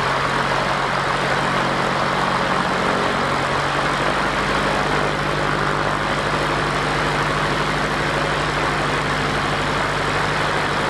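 Piston engine and propeller of a Cub light aircraft running steadily at low power on the ground, a low even engine note under a constant rush of air.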